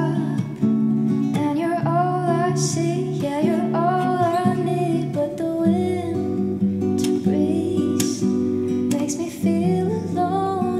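A woman singing to her own acoustic guitar accompaniment.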